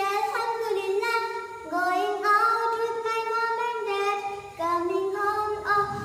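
A young girl singing a poem solo, one voice in long held notes that glide between phrases, with brief pauses for breath.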